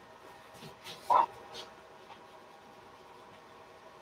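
Crayon strokes on rough watercolour paper, faint and scratchy. About a second in there is one short, high-pitched squeak, the loudest sound here, from an unidentified source.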